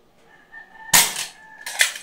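Dart Zone Storm Squad spring-powered foam dart blaster firing once, a sharp pop about a second in, followed by a second short click or knock shortly after. A faint steady tone sounds under it in the background.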